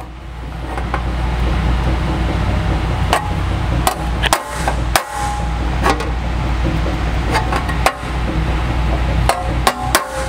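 Hammer tapping the edge of a sheet-metal fender flare over the finger of a box and pan brake, light strikes at irregular intervals, some with a short metallic ring, tipping the flange over a little at a time. A steady music bed runs underneath.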